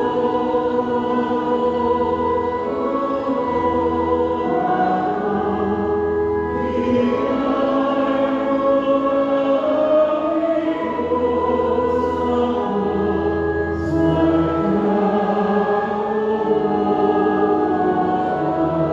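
Church organ playing a hymn in full held chords over a sustained bass line, with the chords changing every second or so.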